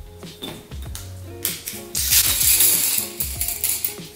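Loose wooden popsicle sticks rattling and clattering as they are spilled out and spread by hand, heaviest from about a second and a half in, over background music.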